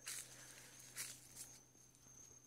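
Near silence: faint outdoor ambience with a thin steady high tone, broken by a soft tap about a second in and a weaker one shortly after.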